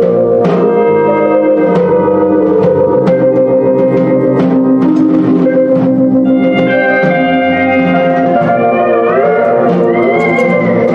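Live band playing an instrumental: drum kit keeping a steady beat, electric bass, and sustained organ-toned chords from a stage keyboard. Near the end, a few held notes slide upward in pitch.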